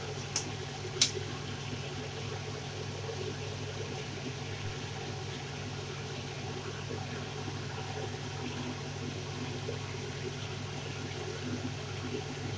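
A long metal spatula stirring diced pumpkin in an aluminium kadai, striking the pan sharply twice within the first second, over a steady hiss and low hum.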